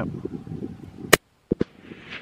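A single sharp, brief rifle shot from a .22-250 Remington about a second in, followed shortly by two quick faint clicks.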